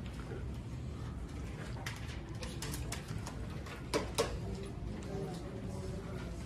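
Quiet classroom room tone: a steady low hum with faint murmured voices and scattered small clicks and taps from pencils, paper and desks. Two sharper knocks come about four seconds in.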